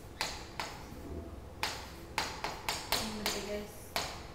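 Chalk tapping and scraping on a chalkboard as symbols and arrows are written: a run of sharp, irregular taps, about nine in all, bunched closer together in the second half.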